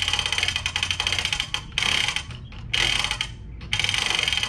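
Hand-cranked boat trailer winch ratcheting as its new strap is wound in: rapid pawl clicks over the gear teeth in four runs with short pauses between cranks.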